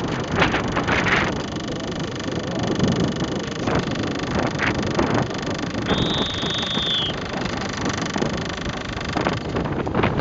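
Steady wind buffeting the microphone, with choppy water slapping around a small boat and a few splashes. About six seconds in, a high, steady whistle-like tone sounds for about a second and dips slightly in pitch at its end.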